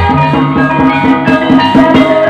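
Ebeg (kuda lumping) accompaniment music from a Javanese gamelan ensemble: struck tuned percussion plays a quick, steady melody over drum strokes.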